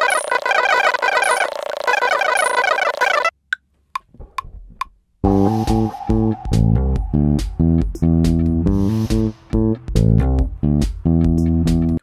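Electric bass guitar playing a riff of short picked notes along with a ticking backing loop, starting about five seconds in. Before that, a brighter busy musical loop plays and cuts off about three seconds in, followed by a brief near-quiet gap with a few string and handling clicks.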